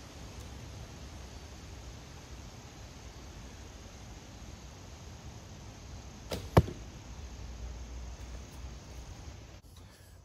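A horsebow shooting a feather-fletched carbon arrow: two sharp cracks about a quarter second apart, some six and a half seconds in, the second much louder. A steady outdoor hiss runs underneath.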